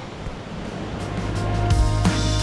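Steady rush of a fast-flowing river, with background music fading in from about half a second in, growing louder and taking over by the end.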